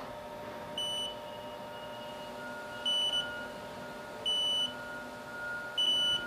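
Haas lathe running a tool-presetter probe cycle: the radial live-tool spindle spins an end mill at 800 RPM with a steady whine, while four short electronic beeps sound at uneven intervals as the end mill is touched off against the probe.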